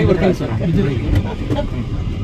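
Men talking over an uneven low rumble from the landed helicopter and its downwash buffeting the microphone.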